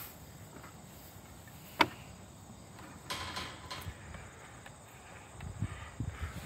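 One sharp knock about two seconds in, then a brief rustle about a second later, over a quiet background with faint insect chirring.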